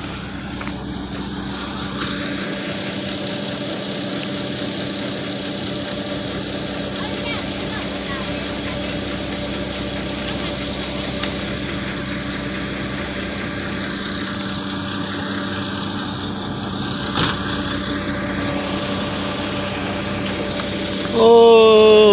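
Large truck's diesel engine running steadily at low revs. Near the end comes a loud, wavering pitched sound lasting about a second and a half.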